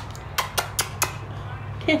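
Four quick, sharp kissing smacks from a woman's pursed lips, close to the microphone, coaxing a horse to give a kiss.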